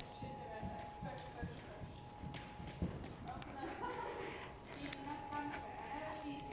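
Hoofbeats of horses walking on an arena surface, a loose series of dull knocks, with indistinct voices talking over them.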